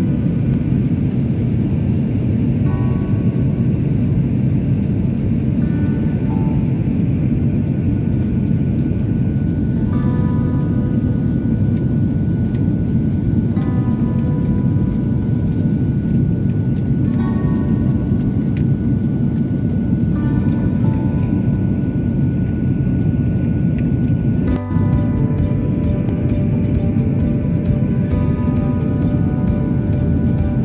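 Steady low roar of a Boeing 737 airliner's jet engines and airflow, heard inside the cabin at a window seat over the wing. Music plays over it, with soft melodic phrases recurring every few seconds.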